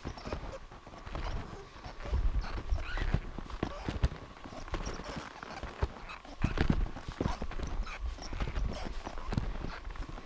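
Footsteps crunching in packed snow while climbing a trail: a steady run of irregular crunches and knocks, with low rumbling bumps on the microphone.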